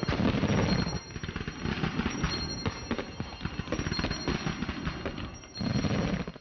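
Dense crackling and popping like fireworks, with a few deeper bursts near the start and again near the end, and a faint broken high ringing tone.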